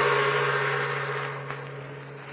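A large gong ringing out after being struck, its low hum and shimmer slowly dying away.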